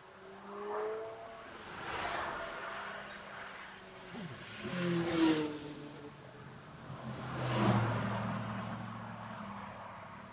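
Several road vehicles passing by one after another, each swelling and then fading with a falling pitch as it goes past; the loudest pass comes about halfway through.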